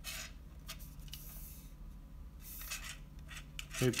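Packaging rustling and scraping in the hands as kit parts are unwrapped, in short irregular bursts.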